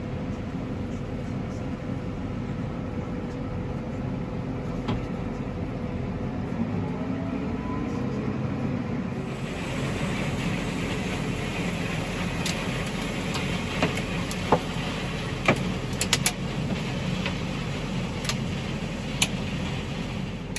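Tractor engine running steadily, heard from inside the cab as a low drone while harvesting machinery works close by. About halfway through the sound turns brighter and hissier, with a few sharp clicks scattered through the rest.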